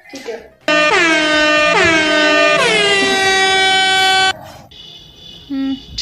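A loud horn sound effect: three long horn blasts run together for about three and a half seconds, each sliding down in pitch as it starts, then cutting off suddenly.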